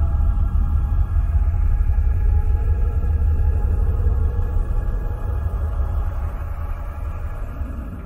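NASA space recording of Uranus's moon Miranda, electromagnetic vibrations converted into sound: a deep, steady rumble with faint sustained tones above it, fading out gradually over the last few seconds.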